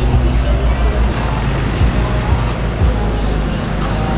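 Mercedes-AMG GT Black Series twin-turbo V8 running with a steady low rumble as the car rolls slowly through traffic, with music and people's voices around it.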